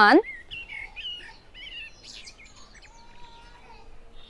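Birds chirping faintly in the background, a string of short chirps over the first couple of seconds, after the tail of a spoken word at the very start. A faint steady tone follows near the end.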